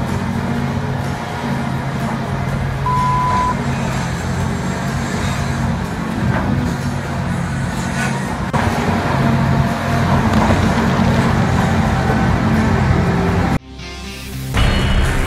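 Large wheel loader's diesel engine running steadily under load, with a single short beep about three seconds in.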